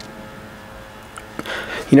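Quiet room tone with a couple of faint, short metal clicks as a spark plug is worked against a coin-style gap gauge to close its electrode gap.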